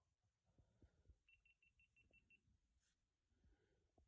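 Near silence, with a faint quick run of about seven short high beeps a little over a second in.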